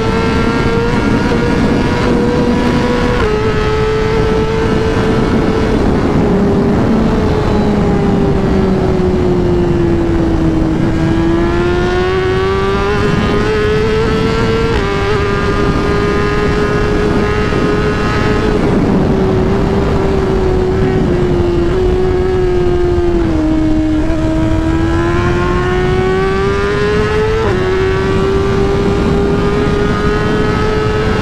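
BMW S1000RR's inline-four engine running at high revs under way, its note sagging and climbing again a few times as the throttle eases and opens, with sudden pitch steps at a few gear changes, over constant wind noise.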